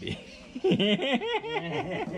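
People laughing, a quick run of short ha-ha bursts that starts about half a second in.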